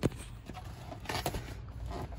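Cardboard mooncake box handled and its lid pried open by hand: a sharp tap at the start, then a few short clicks and rustles about a second in, over a low steady hum.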